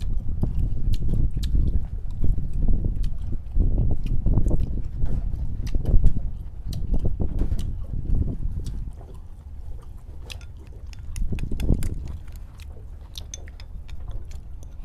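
Close-up eating sounds: chewing, with many small sharp clicks of chopsticks against plates and bowls. A dense low rumble runs underneath, heavier in the first half and easing off after about eight seconds.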